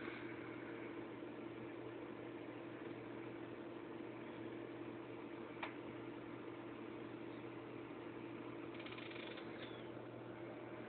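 A steady low machine hum, with one short sharp click about halfway through.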